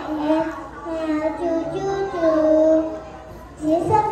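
A young child singing a children's song into a microphone, in held, stepwise notes, with a short break about three seconds in.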